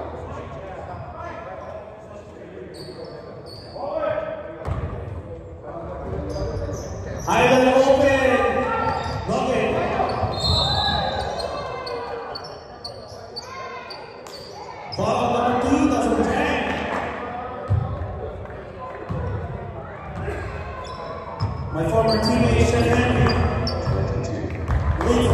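Basketball bouncing on a hardwood gym floor during play, with players' and spectators' voices calling out at intervals and echoing in the large hall.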